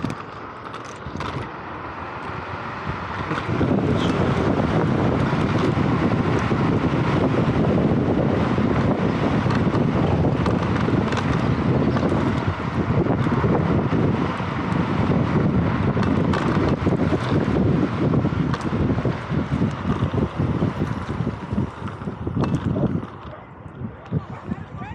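Wind rushing and buffeting over the microphone of a Vsett 10+ electric scooter ridden at speed. It builds up about three seconds in, holds loud and fluttering, and falls away near the end as the scooter slows.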